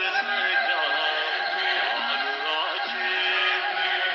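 An Ethiopian Orthodox spiritual song sung over instrumental backing, the voice holding long, ornamented notes that waver in pitch.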